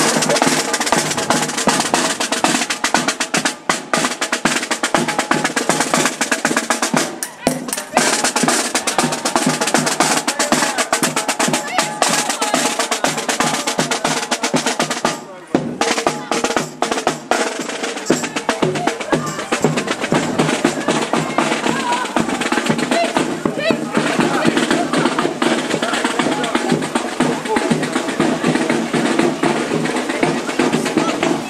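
Marching band passing close, its snare drums playing fast rolls and steady beats, with wind instruments such as saxophone and sousaphone sounding over the drumming.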